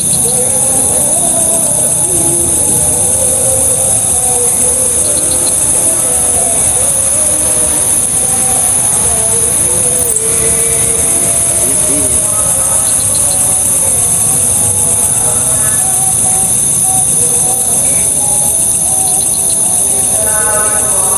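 A loud, steady, high-pitched chorus of night insects that runs on without a break, with faint low voices murmuring beneath it.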